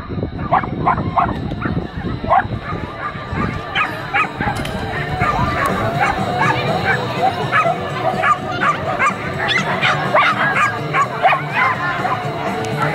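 Dog barking repeatedly in short, high yips, thickest near the end, over a steady low rumble.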